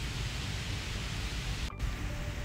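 Steady, even hiss of background noise, with one very brief dropout near the end.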